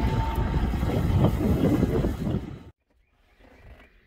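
New Holland T7 tractor's diesel engine running steadily as the tractor drives by pulling a field cultivator. The sound cuts off abruptly about two and a half seconds in, leaving near silence.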